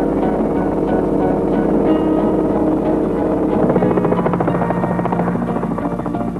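Helicopter rotor chopping along with its engine, coming in about halfway through over background music.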